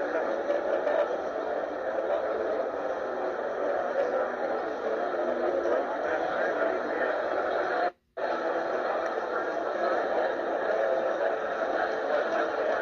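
Bonus-round sound effects of the Huff N' More Puff online slot game, played through computer speakers and picked up by a phone, as coins pay out and the win meter counts up. It is a dense, steady wash of sound that cuts out briefly about eight seconds in.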